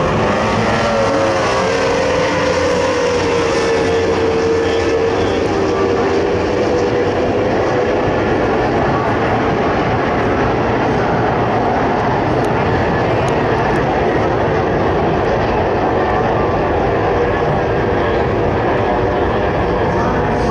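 Several tunnel-hull racing powerboats' outboard engines running at full throttle as they launch from a standing dock start and race away. Their high engine whine dips in pitch over the first few seconds and then holds, over a steady wash of engine and water noise.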